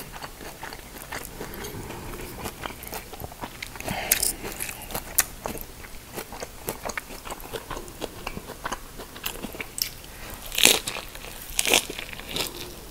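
Close-miked chewing of fresh rice-paper shrimp spring rolls: wet, crunchy chewing of the raw vegetable filling with many small clicks, and louder crunches about four seconds in and again near the end as he bites into another roll.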